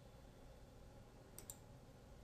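Near silence, broken about a second and a half in by two quick, faint clicks of a computer mouse button selecting an on-screen button.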